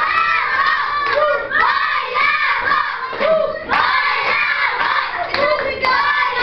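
A group of children shouting and cheering all at once, many excited voices overlapping without a break.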